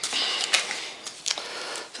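Handling noise from ration packaging: a plastic blister pack set down, then rustling with a few sharp clicks as small paper sachets are pulled from a cardboard box.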